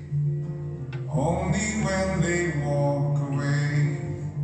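Live acoustic guitar playing over a sustained low note, joined about a second in by a group of voices singing together without clear words.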